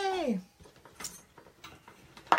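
A woman's drawn-out vocal sound sliding down in pitch, then a few faint clicks and light handling noise from stamping tools as the stamp is being cleaned off.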